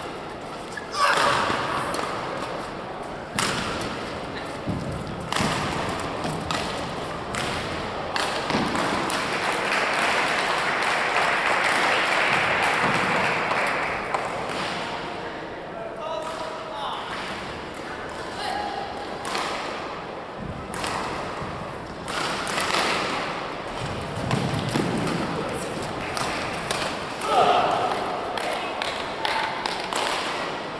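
Men's doubles badminton rally: racket strikes on the shuttlecock and thuds of footwork on the court. These are followed by a spell of raised voices and shouting between points.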